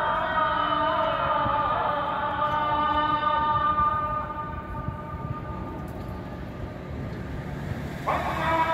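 Adhan, the Islamic call to prayer, sung by a muezzin over a mosque's minaret loudspeakers. One long held note slides in pitch and fades away about halfway through, and the next phrase begins at the very end.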